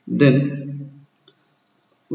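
A man's voice speaking one drawn-out word, then a single faint short click.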